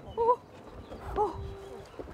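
Two short high-pitched cries, each bending in pitch, one just after the start and one about a second in.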